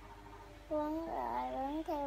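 A child's wordless vocal sound: a drawn-out, wavering, pitched whine that starts about two-thirds of a second in and slides up and down in pitch.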